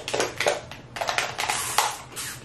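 Cooked Dungeness crab being pried open by hand, its top shell pulling away from the body in a quick run of sharp cracks and crunching shell.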